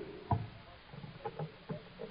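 A pause in an old sermon recording: steady low hiss, one short thump about a third of a second in, then a few faint, brief sounds.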